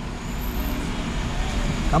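Road traffic noise from slow-moving vehicles: a low engine rumble and road noise growing gradually louder.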